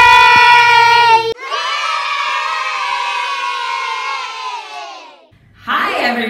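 Children shouting a loud, held cheer that cuts off suddenly about a second in. A crowd of children cheering follows, sinking a little in pitch and fading away over about four seconds.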